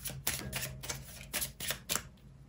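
Tarot cards being handled: a quick, irregular run of sharp clicks and snaps, about eight in two seconds.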